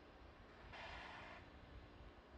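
Near silence with a faint steady hum, broken a little before the middle by a short hiss of about half a second that starts and stops abruptly.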